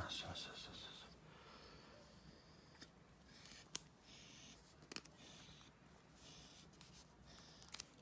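Near silence with faint rustling and crinkling of paper masking tape being handled and wrapped around a foam backer rod, and a few sharp clicks.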